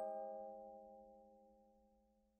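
Background music-box music: a chord of bell-like notes struck right at the start rings on and fades steadily away to silence by the end, a pause between phrases.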